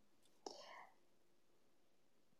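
Near silence, with one faint, short breath from the speaker about half a second in.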